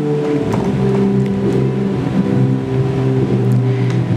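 Background music of slow, sustained low chords, the held notes shifting every second or so.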